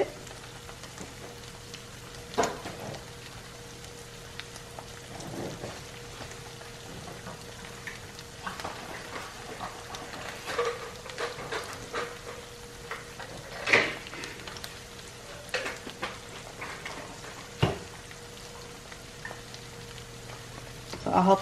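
Chorizo and onion frying in a white nonstick pan: a steady sizzle broken by scattered sharp crackles and pops, over a faint steady hum.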